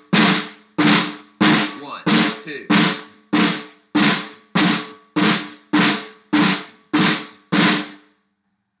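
Snare drum played as a series of crush rolls: both sticks come down together in a multiple-bounce buzz stroke. About thirteen short buzzes land at a steady pulse of roughly three every two seconds, each dying away before the next.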